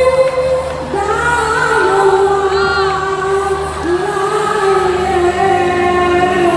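A young boy singing live through a stage PA, holding long notes that slide up and down in pitch, over a steady musical accompaniment.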